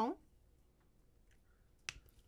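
A plastic marker cap snapped onto a Crayola marker: one sharp click near the end.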